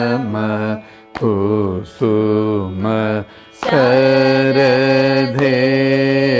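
Carnatic vocal singing of a lesson piece, with the pitch bending and sliding through ornamented glides (gamakas). Several short phrases come with brief breaks about a second in and past three seconds, then one long held phrase.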